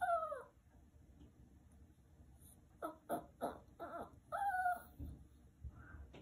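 Chihuahua whining: one falling whine right at the start, then a run of short whines in the middle, the last held a little longer. The owner takes the whining as the dog asking permission to eat.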